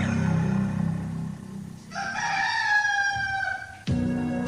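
Low sustained tones fade out over the first second and a half. Then a recorded rooster crows once, one long call that falls slightly in pitch, used as a morning cue in a radio promo.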